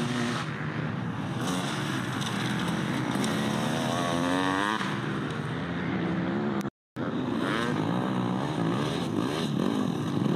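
Off-road racing motorcycle engines revving, the pitch climbing and dropping as the throttle opens and closes. The sound cuts out completely for a split second about two-thirds of the way through.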